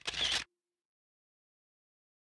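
A single short, sharp burst of noise, about half a second long, right at the start.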